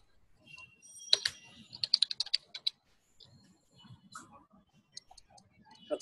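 Computer keyboard typing: a quick run of about eight keystrokes, with a few single clicks scattered before and after it.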